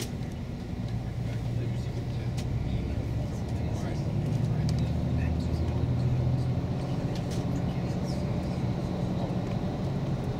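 Shuttle bus engine and road noise heard from inside the cabin: a steady low drone whose engine note shifts slightly and grows a little louder about halfway through.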